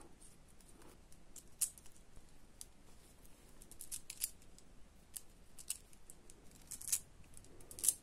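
Faint, irregular small clicks of icosahedron beads knocking together and against the needle as beads are threaded and the beadwork is pulled tight.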